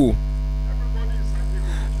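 Steady electrical mains hum: a constant low buzz with several overtones, carried in the recording's audio chain.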